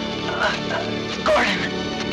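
Film score with sustained notes, over which a wounded man groans in pain twice, in short wavering cries.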